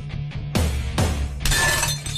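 Loud action-film background score with heavy bass drum hits about twice a second. Glass shatters about one and a half seconds in.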